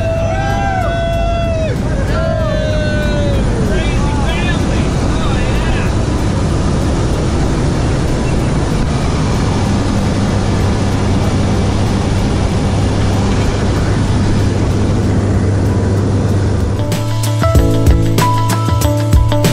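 Steady drone of a small propeller plane's engine heard inside the cabin during the climb to jump altitude, with excited yelling and whooping from the passengers for the first few seconds. Music begins near the end.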